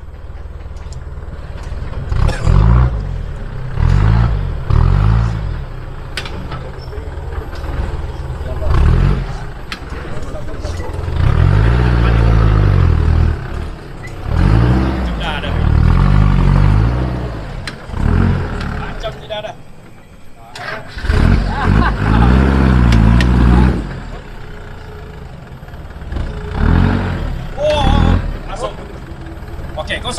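Off-road 4x4's engine revving in repeated bursts as it climbs a muddy, log-strewn track, each burst rising and falling in pitch, with a short lull about two-thirds of the way through.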